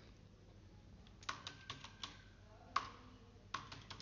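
Computer keyboard being typed: a quick run of keystrokes starts a little over a second in, then a few single clicks and a short burst near the end.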